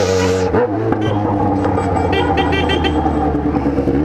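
Yamaha XJ6 motorcycle's inline-four engine running steadily at an even cruising speed through its aftermarket exhaust. A brief rush of noise at the start.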